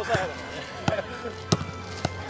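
A football being trapped and struck on grass in a quick stop-and-kick passing drill: a sharp touch of the foot on the ball about every two-thirds of a second.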